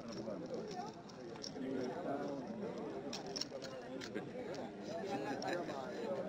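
Voices talking in the background, with a few short metallic clinks from an iron chain and wrist manacles being handled.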